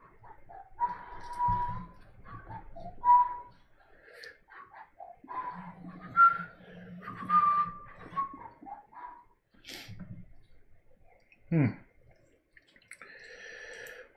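Soft whistled notes, short held tones at a middling pitch, mixed with a few clicks and knocks of painting tools and a paint tube being handled at the palette. A short 'hmm' comes near the end.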